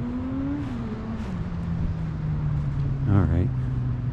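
A motor engine running with a steady drone; its pitch drops about a second in and then holds level. A brief voice is heard about three seconds in.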